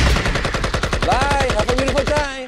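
Automatic-gunfire sound effect closing a hip-hop track: a rapid, even rattle of shots, about fifteen a second, that takes over as the beat cuts out. A short wavering pitched tone sounds over the shots about halfway through.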